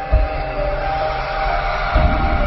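Cinematic intro music: sustained synth tones that step between notes over a swelling hiss, with a deep low hit just after the start and another at the end.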